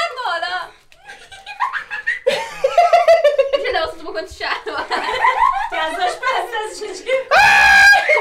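A man laughing helplessly and crying out while being tickled, with other voices around him. Near the end comes a loud, high-pitched shriek held for about half a second.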